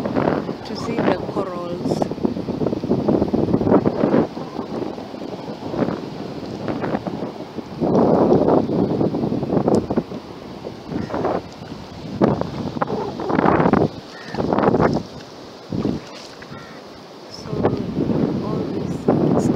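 Wind gusting across the microphone in irregular bursts, with faint indistinct voices underneath.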